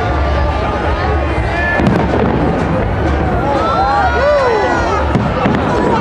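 Fireworks going off overhead, with sharp bangs about two seconds in and again about five seconds in, over the shouting and chatter of a crowd of onlookers.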